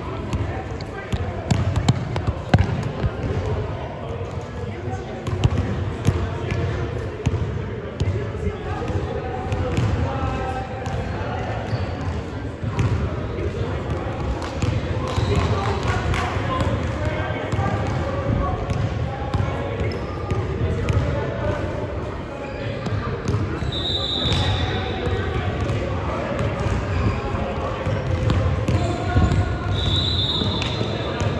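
Overlapping voices echo in a gymnasium as coaches and players talk in huddles, with a basketball thudding now and then on the hardwood floor. Two short, high whistle blasts sound, the first about three-quarters of the way through and the second near the end.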